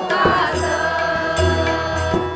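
A Marathi devotional bhajan: a voice sings over a harmonium holding steady notes, with a few hand-drum strokes from the tabla and barrel drum.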